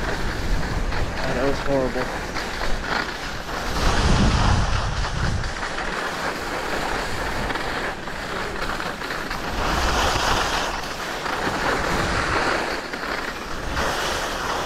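Skis sliding and scraping over snow, with wind rushing over the camera microphone; the noise swells and eases as the run goes on.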